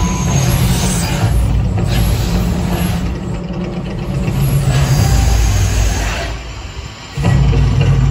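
Mirage volcano show: a deep rumble and show music from its sound system, with whooshing bursts from the gas fire jets on the lagoon. The rumble dips about six seconds in and surges back loud about a second later.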